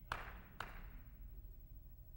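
Quiet room tone during a pause, with two faint taps about half a second apart near the start and a faint steady hum.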